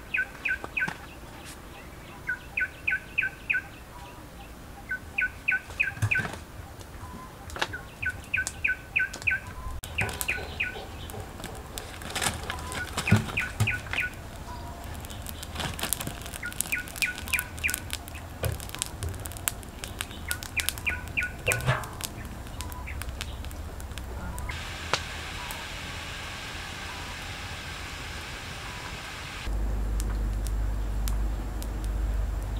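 A bird sings the same short phrase of four to six quick chirps over and over, every two to three seconds, with sharp clicks scattered among the phrases. Near the end the song stops and a steady hiss takes over for a few seconds.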